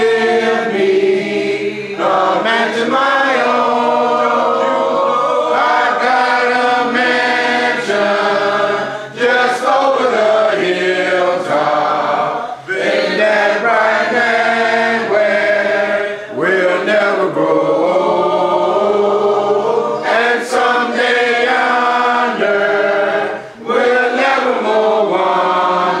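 A church congregation singing together a cappella, with sustained sung phrases and short breaths between them.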